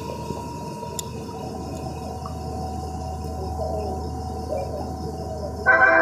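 Steady hiss of heavy rain with a low hum under a platform roof. About five and a half seconds in, the railway public-address chime starts loudly: a held chord of several steady tones that leads into a train announcement.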